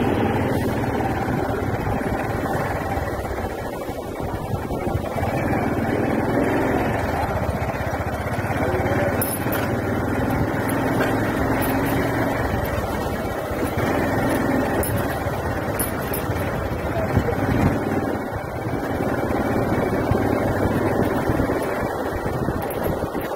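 Steady engine rumble and road noise heard from a vehicle moving slowly along a street.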